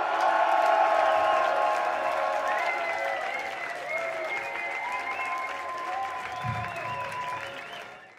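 A concert audience applauding and cheering after a heavy rock set, with long held high tones ringing over the clapping. The sound fades out near the end.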